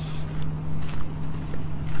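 Footsteps crunching on gravel, a few faint irregular steps, over a steady low hum and wind rumble on the microphone.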